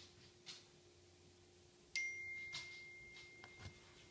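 A single clear, high ringing tone that comes in suddenly about halfway through and fades slowly over the next two seconds, over faint rustling.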